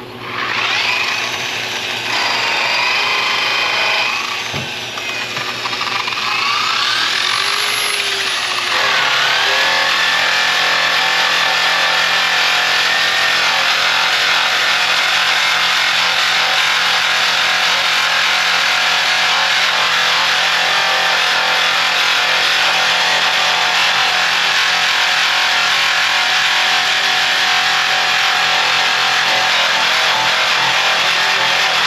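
Small handheld grinder with an abrasive disc running against aluminum diamond-plate. Its pitch wanders up and down in the first few seconds, then it holds a steady grinding hiss from about nine seconds in.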